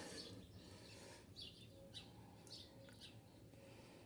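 Near silence with a few faint, short, high bird chirps in the background, spaced about half a second apart in the middle seconds.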